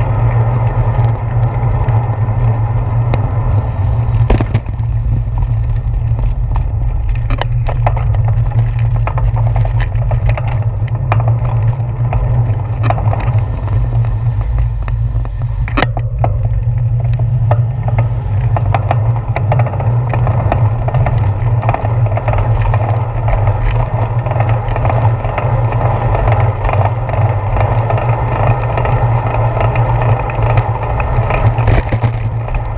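Steady wind and road rumble picked up by a handlebar-mounted GoPro on a bicycle being ridden, with a sharp knock about four seconds in and another about sixteen seconds in.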